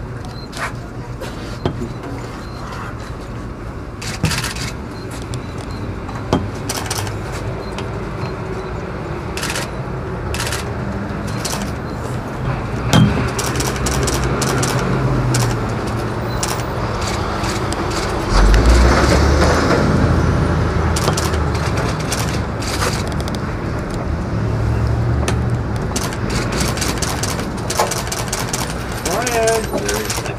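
Busy street ambience: steady traffic noise with indistinct voices and scattered sharp clicks. A heavier low rumble comes in about 18 seconds in and is the loudest part, easing off a few seconds later.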